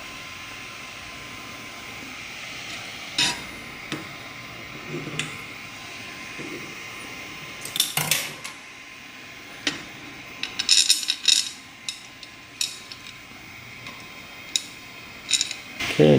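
Scattered light metallic clicks and clinks from handling the Ender 3 V2's aluminum bed plate with its leveling screws and springs, with a quick run of clinks a little past the middle.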